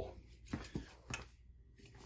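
A few faint knocks and rustles of handling as a plastic tennis ball tube is taken from a shop display and picked up, over quiet room tone.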